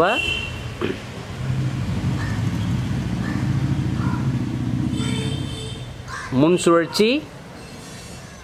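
A motor vehicle's engine passing by: a low hum that swells over a few seconds and fades away about six seconds in.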